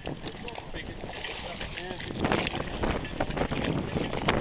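Wind on the microphone over choppy sea water beside a boat, growing louder with splashy, gusty noise from about two seconds in.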